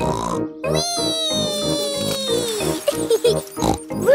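A child's cartoon voice calling out one long, drawn-out 'wheee' that slowly falls in pitch, over upbeat children's background music with a steady beat.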